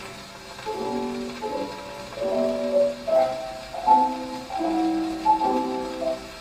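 Pianola (pneumatic player piano) playing a bar or two of a melody slowly, with chords under it and the notes starting just under a second in. It is heard from an old acoustically recorded 78 rpm disc on a horn gramophone.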